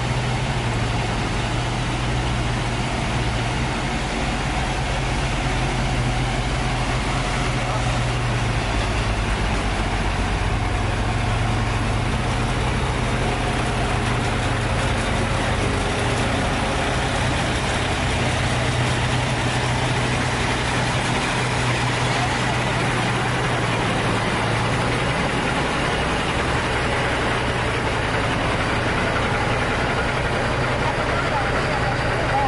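Heavy diesel engines of dump trucks and a wheel loader idling close by: a steady low engine drone that holds through the whole stretch.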